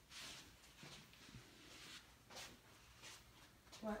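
Near silence: room tone with a few faint, brief noises.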